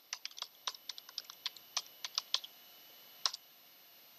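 Computer keyboard typing: a quick run of keystrokes over about two and a half seconds, then one louder key press near the end.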